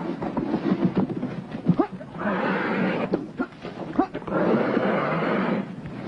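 Cheetahs hissing and snarling in threat, in two rough bursts of about a second each, at the men who are taking their kill.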